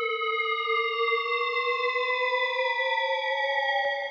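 Synth pitch-riser patch from Ableton Operator's FM synth, held as one sustained electronic tone. Its pitches drift slowly apart, the lowest edging upward while the higher ones slide down, as two oscillators with separately automated fine-tune clash against each other. It cuts off suddenly just before the end.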